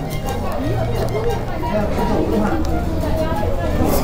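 Background music over indistinct chatter of people nearby, with a few short clicks and crackles as a wrap in a paper wrapper is bitten into and chewed.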